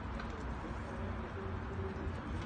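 Quiet open-air stadium ambience: a steady low rumble with faint bird cooing.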